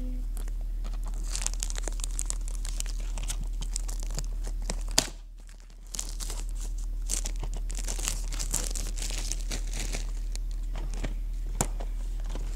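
DVD packaging being crinkled and torn by hand, close to the microphone, with scattered clicks. A sharp click comes about five seconds in, followed by a short lull, and a low steady hum runs underneath.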